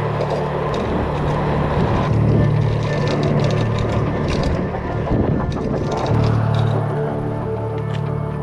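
Bolt electric kick scooter being ridden: wind rushing over the handlebar-mounted microphone, with rumble and small rattles from the path. A low steady hum drops out briefly about two seconds in and again near five to six seconds.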